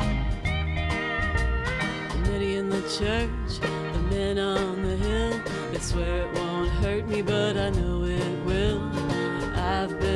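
A live country band playing: strummed acoustic guitar, electric bass and drums, with a steel guitar sliding between notes.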